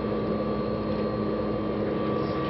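Steady hum of the space station module's ventilation fans and equipment, with a few constant tones running through it.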